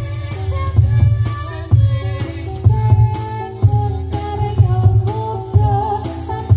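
Javanese gamelan music for a jathilan dance: a melody on pitched metal percussion over a low drum beat that peaks about once a second.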